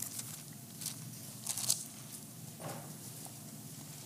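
Bible pages being turned, heard as a few brief soft paper rustles over a faint steady room hum.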